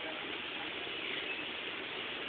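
Steady, indistinct background noise of a shop floor, with no single clear event.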